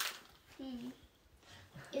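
Quiet room sound with a short sharp click at the very start and a faint, distant voice about half a second in; a woman's voice begins just at the end.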